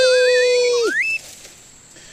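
The hare's loud 'wee wee' whistle call: a long held high note with a wavering higher line rising above it, ending about a second in with a quick upward whoop. Quiet follows.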